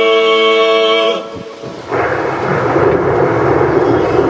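A long sung note held on one steady pitch that cuts off about a second in, followed after a short lull by a loud, steady, rough rumbling noise.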